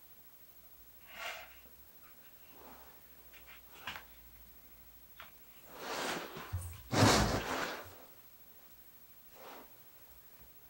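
Quiet handling sounds of hands working a small wired conifer's branches, with a few soft rustles. About two-thirds of the way through comes a louder scuffle with a soft thump, as something on the bench is handled.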